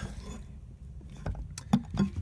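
Low rumbling handling noise with a few light clicks and one sharper knock near the end, as the hand-held oscillating multitool and camera are moved about the window frame; the multitool is not running.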